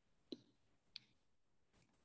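Three faint computer mouse clicks, spaced roughly a second apart, as a Zoom screen share is being set up; otherwise near silence.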